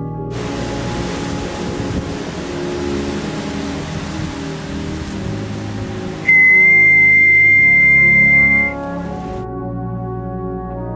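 A steady rushing noise over orchestral brass music. About six seconds in comes one long, high, steady whistle blast lasting a couple of seconds, the loudest sound here: a trench whistle signalling the charge over the top.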